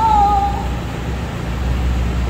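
A high-pitched, drawn-out sing-song voice calling "go!", held for about half a second and falling slightly, over a steady low hum.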